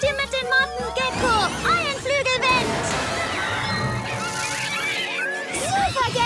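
Cartoon soundtrack: action background music with quick runs of short high chirping sound effects and brief vocal grunts.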